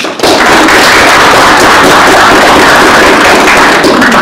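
Small audience applauding loudly: a dense, steady patter of hand claps that starts just after the beginning and dies away right at the end.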